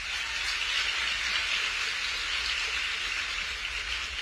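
Audience applause, a steady clapping that begins to fade near the end.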